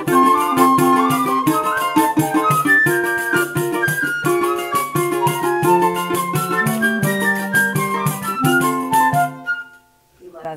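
Live choro ensemble playing: flute and clarinet carrying the melody over a strummed cavaquinho and pandeiro keeping a quick, even rhythm. The tune ends on a final held note about nine and a half seconds in.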